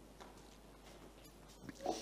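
Faint swallowing and mouth sounds of a man drinking water from a glass, picked up by a handheld microphone, with a short, slightly louder breath near the end.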